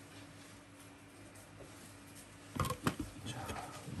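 Quiet room tone, then about two and a half seconds in a quick cluster of sharp plastic clicks and knocks as a small plastic cap is handled and set down inside an acrylic ant enclosure.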